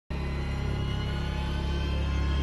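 Background music: a steady low drone under sustained held tones.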